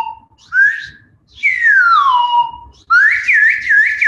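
Whistled imitation of birdsong: a few clear notes sliding down in pitch, then a quick warbling trill near the end.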